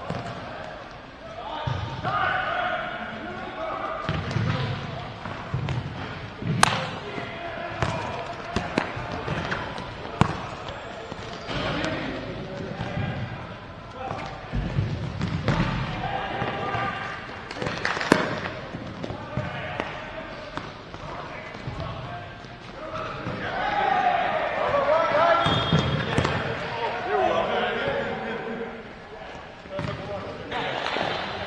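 Players shouting to each other during an indoor futsal game, with sharp knocks of the futsal ball being kicked and bouncing on the hard court. The two loudest knocks come about a quarter and about three-fifths of the way through.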